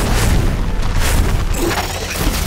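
Fantasy-battle sound effects of flame beasts clashing: a heavy booming rumble with a few sharp crashing hits, one near the start, one about a second in and one about a second and a half in.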